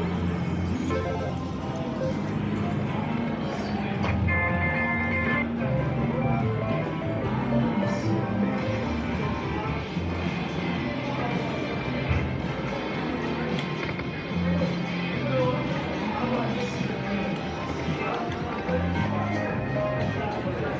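Casino slot-floor sound: music with a steady bass line over the electronic sounds of a video slot machine spinning its reels, with a brief chime of held tones about four seconds in.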